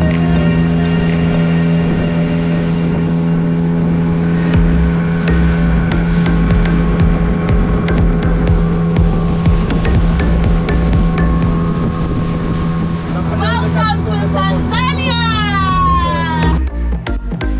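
Boat motor running at a steady pitch while the hull moves at speed, with water rushing and splashing alongside. Near the end a voice calls out, its pitch rising and falling.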